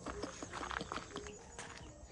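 Footsteps on a dirt road: a run of soft, irregular steps.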